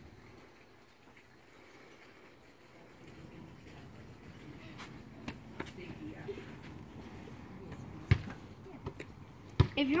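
RipStik caster board's wheels rolling over a concrete driveway: a low rumble that grows louder from about three seconds in, with a couple of sharp knocks near the end.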